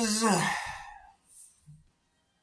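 A man's held sung note ends, his voice sliding down in pitch and trailing off into a breathy sigh within the first second. After that, near silence with only a soft breath.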